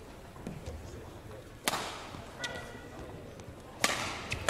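Two sharp impacts ringing in a large, echoing hall, one about a second and a half in and a louder one just before the end. The last is a badminton serve, a racket striking the shuttlecock. A brief squeak of a shoe on the court floor comes between them.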